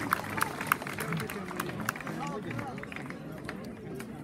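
Sharp rhythmic clacks from folk dancing, about three or four a second, dying away about two seconds in. Crowd chatter follows.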